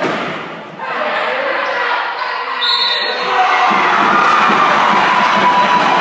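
Basketball game in a gym: the ball bouncing on the hardwood court, with players' and spectators' voices echoing around the hall, growing louder about three and a half seconds in.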